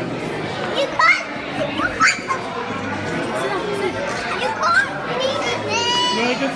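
Busy dining-room chatter with young children's excited high-pitched voices, short rising cries about one and two seconds in and again near the end.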